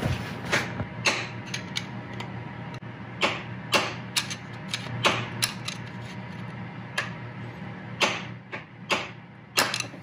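A hand tool worked against a screw extractor jammed in a broken engine temperature sensor: irregular metallic clicks and creaks as the tool is twisted, over a steady low hum. The sensor does not break loose.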